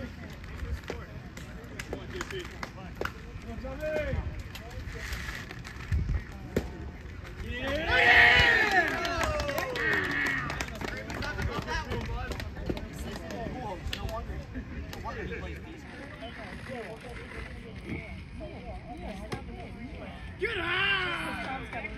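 Indistinct voices throughout, with one loud drawn-out shout about eight seconds in.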